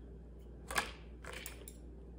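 Chewing a hard gummy candy: two short chewing sounds about half a second apart, the first the sharper and louder.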